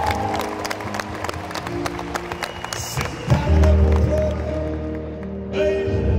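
Live band playing a sustained instrumental passage on keyboard and bass, with hands clapping along in the first half. About three seconds in the band comes in louder with heavy bass chords.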